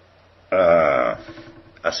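A man's single short, loud burp, lasting about half a second.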